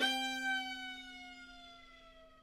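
Fiddle music: one long held note that sags slightly in pitch as it fades away, over a steady low drone.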